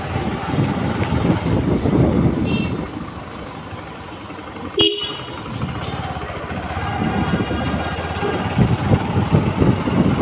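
Motorcycle engine running while riding along a street, its exhaust pulsing steadily and easing off for a few seconds mid-way. A vehicle horn gives one short toot about five seconds in, with a fainter, higher beep a couple of seconds before it.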